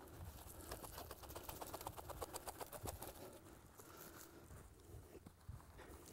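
Loose soil pattering and crackling as gloved hands work dirt from a metal sifter tray in around a bedded trap, a quick run of small crackles until about three seconds in, then fainter scattered ticks.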